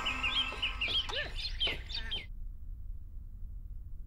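Birds chirping in quick wavering calls, with a chicken clucking among them; the sound cuts off abruptly about two seconds in, leaving only a faint low hum.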